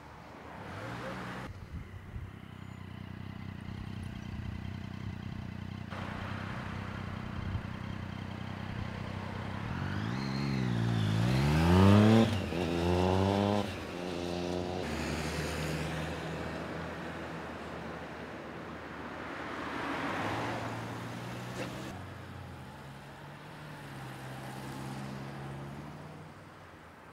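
A car engine idling, then the car pulling away and accelerating with a rising engine note and one upshift about twelve seconds in, the loudest part. Later another vehicle passes with a swell of road noise.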